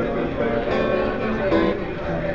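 Steel-string acoustic guitar strummed in the closing bars of a song, the chord changing about two-thirds of a second in and again near the end.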